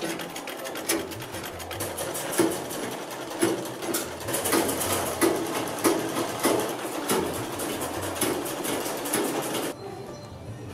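Treadle-powered sewing machine running and stitching: a fast, steady clatter of the needle mechanism with louder knocks from the treadle drive every half second or so. It cuts off abruptly just before the end.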